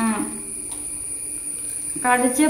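A short vocal sound at the start trails into a faint, steady hum from a person eating. A constant thin high-pitched whine sits underneath.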